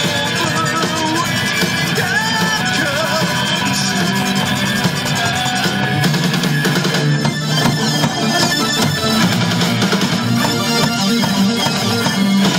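Live metal band playing an instrumental passage: electric guitars, bass guitar, drum kit and keyboards together, loud and steady. A lead line bends and wavers in pitch in the first few seconds.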